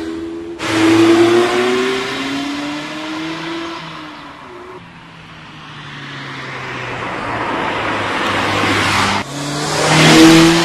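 Mazda MX-5's four-cylinder engine revving as the car drives through bends, its pitch rising and falling with throttle and gear changes. It is loud just after an abrupt cut about half a second in, fades away toward the middle, then grows louder again before another abrupt cut near the end.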